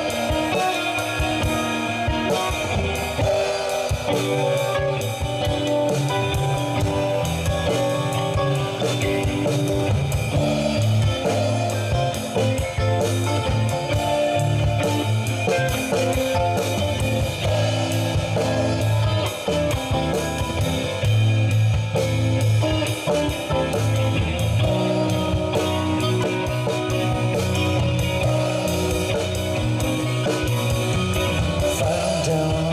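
A live band playing an instrumental passage: electric guitar, electric bass and drum kit.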